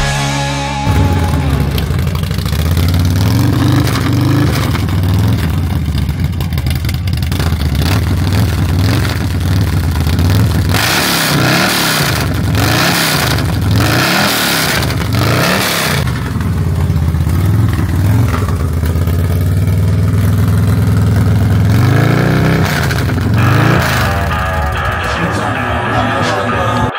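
Custom V-twin motorcycle with a Two Brothers Racing aftermarket exhaust idling with a deep rumble, then revved in a run of quick throttle blips about halfway through and once more near the end.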